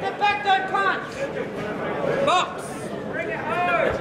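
Men's raised voices calling out at ringside during an amateur boxing bout, with phrases rising and falling and sometimes overlapping.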